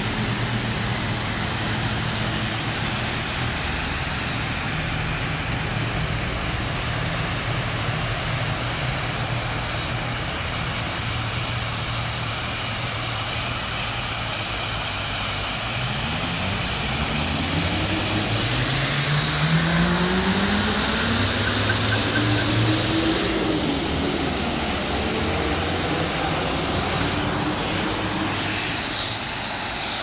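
Steady rush of a fountain's water jets splashing into its basin, louder in the second half. Underneath, engines run steadily and then rise and fall in pitch several times.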